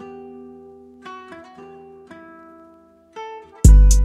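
Trap instrumental: a Spanish-style guitar plucks a slow, sparse run of single notes. Near the end a loud, deep bass hit and quick drum-machine ticks come in.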